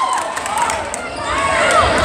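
Crowd noise in a gymnasium with a voice shouting, and a basketball dribbled on the hardwood court near the end.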